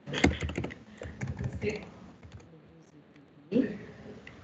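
Computer keyboard typing: a quick run of keystrokes over the first couple of seconds, then a few scattered taps.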